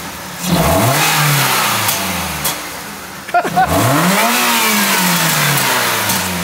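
BMW E36's swapped-in M44 inline-four engine free-revved twice while standing: the pitch climbs quickly and falls back, then climbs again and falls back more slowly. The second rev reaches about 8,000 rpm, the engine's rev limit.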